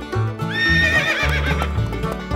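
Horse whinny sound effect: a high call starting about half a second in that breaks into a quavering trill as it fades, over background music with a steady bass beat.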